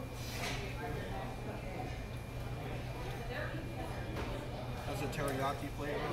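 Indistinct voices over a steady low hum.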